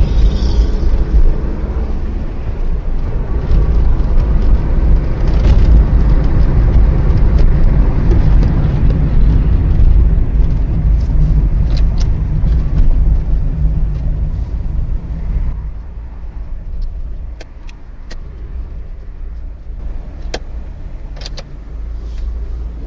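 Car moving in traffic, heard from inside through a dashcam: a steady, loud low rumble of engine and road noise that drops off about two-thirds of the way through, with a few sharp clicks near the end.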